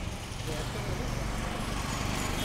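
Steady low hum of an idling car engine, with faint voices of people talking in the background.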